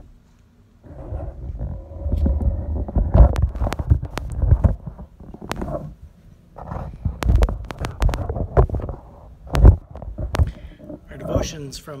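Handling noise on a phone's microphone as it is gripped and repositioned: irregular rubbing and low rumbling broken by sharp clicks and knocks, with two heavy jolts, one about three seconds in and one near the end.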